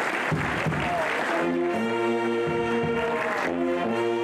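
Applause, then a carnival brass band (sousaphone, saxophones and drums) strikes up about a second and a half in, playing a few long held chords with low drum beats underneath.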